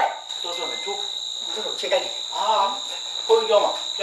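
Crickets trilling steadily as a continuous high-pitched drone, with brief low voices underneath.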